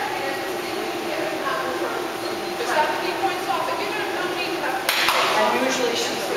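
Indistinct voices talking in a large hall, with a sudden sharp bang or crack about five seconds in.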